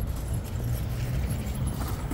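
Footsteps on a paved walkway over a steady low outdoor rumble, with a few light clicks near the end.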